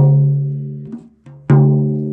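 Tom drum struck twice with a felt mallet, each hit ringing out with a low pitched tone and a few overtones that die away over about a second; the second hit comes about a second and a half in. The drum is being tuned by ear and tuner.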